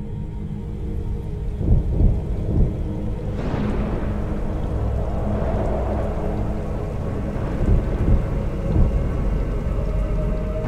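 Cinematic intro soundscape: a low, dark drone with deep booms, joined about three seconds in by a swelling rain-and-thunder sound effect.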